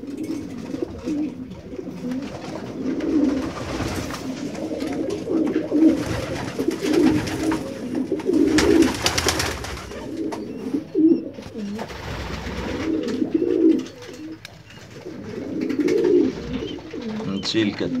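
Domestic pigeons cooing over and over, low coos overlapping one another without a break.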